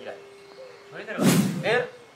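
Men's voices, with one sudden loud thump or slap a little past a second in.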